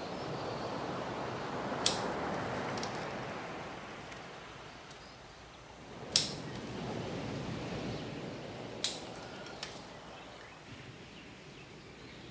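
Steel bonsai scissors snipping the new candles of a Japanese black pine during summer candle cutting (mekiri): three sharp snips about two, six and nine seconds in. Soft rustling of the pine needles is heard between the snips as the hand works through the foliage.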